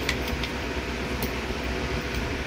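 A steady mechanical hum over background noise, with a few faint light clicks.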